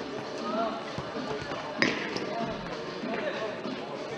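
Futsal ball kicked and bounced on a sports-hall floor, with one sharp, loud strike about two seconds in and smaller knocks around it, over players' calls echoing in the hall.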